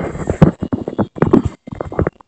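Handling noise from a hand-held camera being moved: an irregular run of close knocks and rubbing against the microphone.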